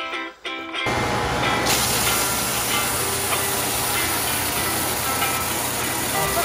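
Electric belt sander running: a loud, steady hiss over a low hum that starts suddenly about a second in.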